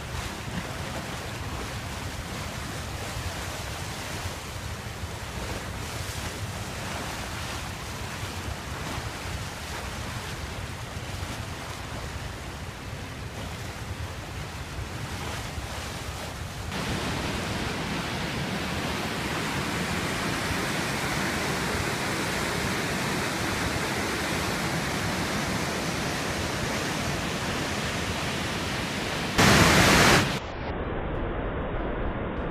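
Dam outflow water rushing and churning over concrete in a steady noise, with some wind on the microphone. It steps up louder and brighter about two-thirds of the way through, and a short loud burst comes just before the end.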